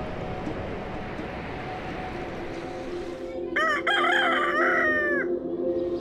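Rooster crowing once, a single call of nearly two seconds starting a little past halfway, over a steady low drone.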